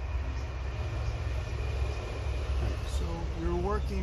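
Steady low rumble of background noise, with a person's voice starting about three seconds in.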